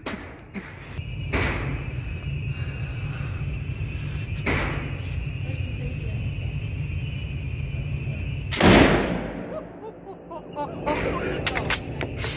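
A single shot from a Kar98k bolt-action rifle in 8mm Mauser (7.92×57), about three-quarters of the way in, ringing out in the reverberant indoor range. Two fainter bangs come earlier, and a run of sharp metallic clicks follows near the end as the bolt is worked, all over a steady low hum.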